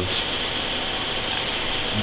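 Steady background noise: an even hiss with a faint low hum.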